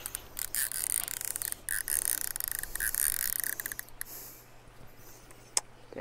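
Baitcasting fishing reel being cranked, a rapid run of irregular mechanical clicks for about four seconds as line is wound in, then a single click near the end.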